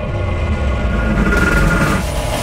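A loud, sustained low rumble with a layer of steady high tones, the kind of drone used as dramatic sound design in a film trailer.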